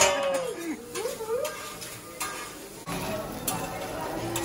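Metal spatulas scraping and clicking on a steel teppanyaki griddle as rice is worked on the flat-top. A voice exclaims briefly in the first second or so.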